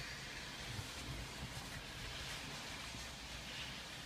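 Faint, steady background hiss with a low rumble and no distinct events: quiet ambience inside a stopped car.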